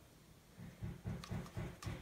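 Faint, quick low rubbing pulses, about five a second, from a makeup brush being swirled in a baked eyeshadow pan to pick up colour, with a few light ticks.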